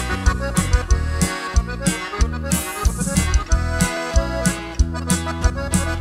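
Norteño band playing an instrumental break: button accordion leading over bajo sexto, electric bass and drum kit keeping a steady beat.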